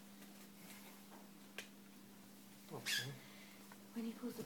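Quiet room with a steady low hum; a single sharp click about a second and a half in, and a brief louder sound with a falling pitch near three seconds in, as hand tools work on a metal Ilizarov frame.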